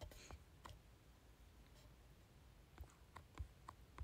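Near silence broken by a few faint, sharp clicks, a couple near the start and a small cluster about three seconds in.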